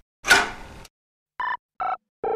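Electronic sound effects: a short noisy burst that fades away, then two short electronic beeps, the second lower in pitch than the first.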